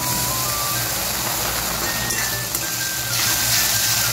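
Onions and ginger-garlic paste sizzling in hot oil in a kadai, with a steady hiss that grows a little louder near the end as a spatula stirs them. A simple background tune of single held notes plays over it.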